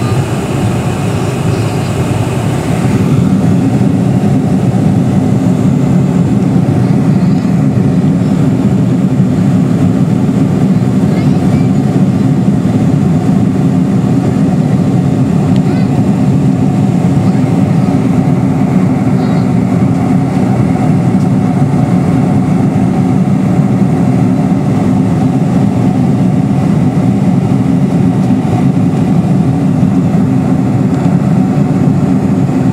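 Steady drone of an airliner's jet engines and rushing air, heard inside the passenger cabin. About three seconds in, the hiss drops away and the low drone gets a little louder, then holds steady.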